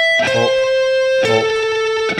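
Stratocaster-style electric guitar picking single notes of an A minor arpeggio slowly, on up-strokes. A new note sounds about a quarter second in and another a little past a second, each lower than the last and each ringing about a second.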